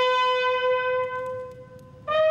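Solo brass instrument holding one long, steady note that fades away about a second and a half in.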